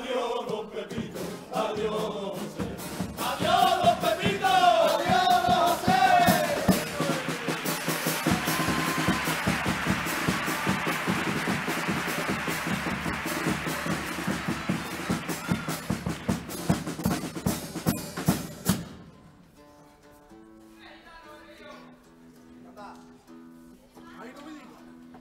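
A carnival murga chorus singing over a bass drum and snare drum, then a long loud stretch of drumming and noise that cuts off abruptly about nineteen seconds in. After that only faint held notes and a few quiet voices remain.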